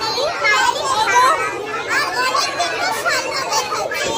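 Several girls talking over one another at once, with other children chattering around them.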